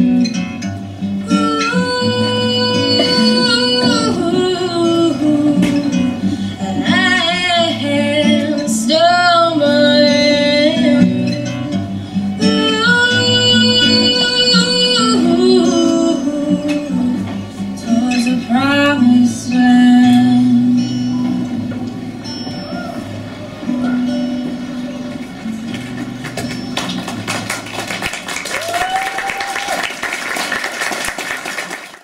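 Solo female voice singing a slow song in long held notes, accompanied by an acoustic guitar.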